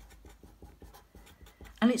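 Green felt-tip marker writing a word in a quick run of short strokes.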